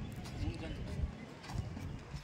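Faint voices of people standing around, over a low, uneven rumble with a few dull thumps.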